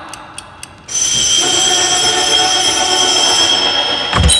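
A vinyl picture disc playing on a turntable: the music fades out with evenly spaced surface-noise clicks. About a second in, a loud, steady sound of several held tones starts abruptly.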